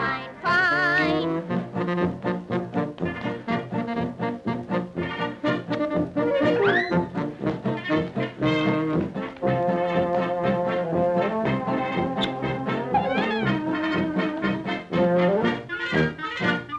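Orchestral cartoon music led by trombones and trumpets, playing a brisk tune of short, changing notes throughout, with a sliding note up and down about halfway through.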